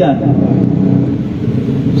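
Steady low rumble of outdoor background noise through a pause in a man's speech at a microphone, with the end of a spoken word at the very start.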